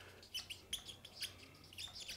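Felt-tip marker squeaking on flipchart paper while writing a word: a quick, irregular run of short, faint, high squeaks with each stroke.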